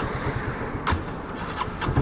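Motorcycle engine idling at a standstill, with two light clicks; right at the end the engine note rises sharply as the bike pulls away.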